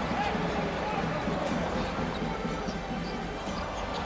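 Basketball game sound in a large arena: a ball being dribbled on the hardwood court over a steady murmur of crowd and voices.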